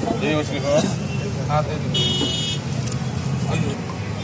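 Busy street: people talking over a steady traffic rumble, with a high-pitched vehicle horn tooting briefly about halfway through.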